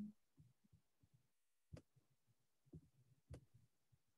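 Near silence, broken by three faint, brief clicks.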